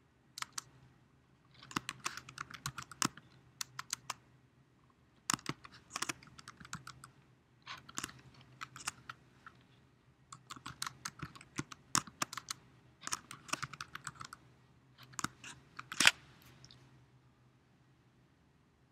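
Typing on a computer keyboard: quick runs of key clicks in short bursts with brief pauses between them, as lines of code are entered.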